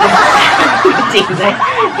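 Young men laughing loudly together, breaking up in giggles, hardest right at the start.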